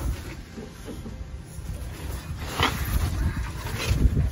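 Clothing rustling and scraping on concrete, with phone handling noise, as a man shuffles on his back under a vehicle. There is one short, brighter sound about two and a half seconds in.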